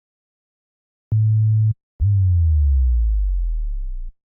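Simple sine-wave bass from the Native Instruments Massive synth. About a second in it plays a short steady low note, then after a brief gap a longer note that slides steadily down in pitch and fades slightly: a pitch-automated 'subboom' effect.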